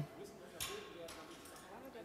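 A torque wrench on a tractor's rear-wheel nuts giving one sharp metallic click about half a second in: the sign that the nut has reached its set tightening torque.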